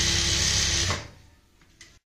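Industrial sewing machine running a short fast burst of stitches as it sews a folded elastic waistband, then stopping abruptly about a second in; a few faint clicks follow.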